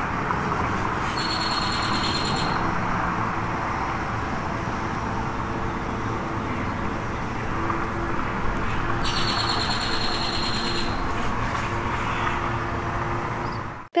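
A bird calling twice in a high trill, each call about a second and a half long and some eight seconds apart, over a steady outdoor background hum.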